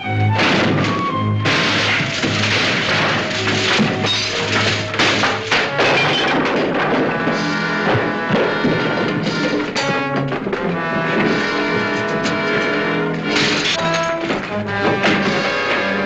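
Dramatic orchestral film score with loud crashes and thuds mixed in.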